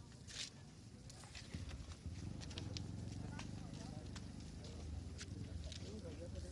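A burning truck: a low steady rumble with scattered sharp crackles and pops.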